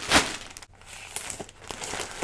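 Clear plastic packaging bag crinkling as it is handled and opened, with one loud rustle just after the start and lighter crinkles after it.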